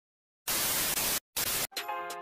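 Two bursts of static-like white-noise hiss, a longer one about half a second in and a shorter one after a brief gap, then steady synth tones of the intro music starting near the end.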